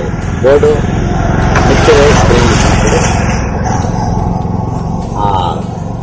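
A small engine running steadily, with a broad hiss over it and a voice speaking briefly over the noise a few times.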